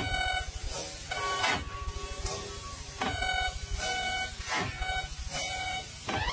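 A pop song played back at 0.3x speed, pitched far down and drawn out into long held tones over a fast low pulse, with a sweeping glide that comes round about every one and a half seconds.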